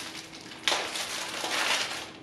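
Disposable glove being handled and pulled on: a rustling, crinkling noise that starts suddenly about a third of the way in.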